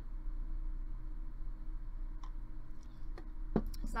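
Steady low electrical hum of room tone, with two faint clicks, the second and stronger one near the end.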